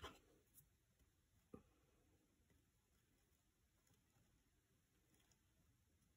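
Near silence: room tone, with two faint soft knocks, one right at the start and one about a second and a half in, as hands handle a small wooden box frame.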